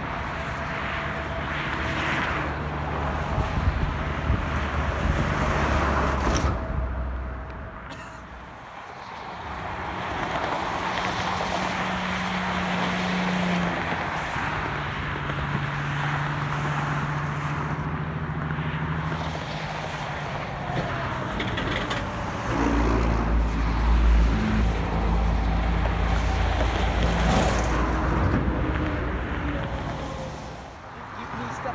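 Highway traffic passing below: cars and trucks driving by with steady road noise. The sound dips to a lull about eight seconds in, and a heavy low rumble builds in the last third.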